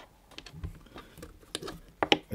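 Clicks and light taps of Klask game pieces (magnetic strikers, ball and small white magnet biscuits) on the game board as they are handled and moved: one sharp click at the very start, then several smaller scattered clicks.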